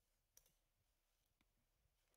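Near silence with two faint computer mouse clicks, one about half a second in and a softer one past the middle.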